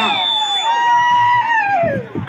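Voices chanting a traditional Naga dance song: a long high note is held, then slides down near the end.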